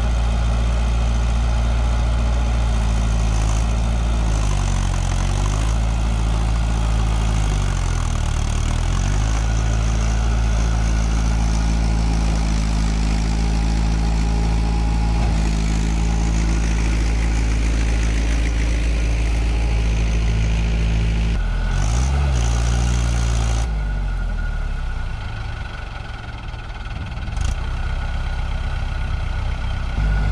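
Mahindra Arjun tractor's diesel engine running loud under load while the tractor is bogged in paddy-field mud with a loaded trolley; its speed dips and recovers twice early on as it labours, then it runs quieter for a few seconds near the end, with a brief knock.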